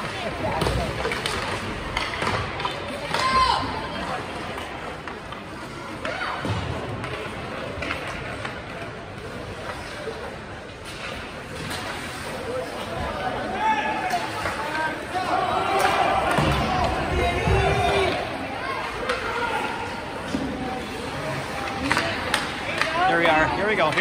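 Indistinct chatter and calls from spectators in an ice hockey arena, echoing in the rink. Occasional sharp knocks of sticks and puck on the ice and boards come through the talk.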